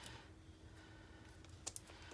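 Near silence with a few faint small clicks of fingernails picking at tape on a plastic-wrapped tube, the clearest near the end.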